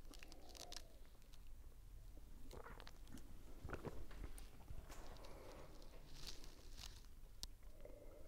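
Faint sips and swallows of beer from glasses, with a few small clicks and soft rustles.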